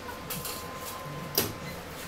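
Supermarket background noise: a faint steady hum, with one sharp click about one and a half seconds in.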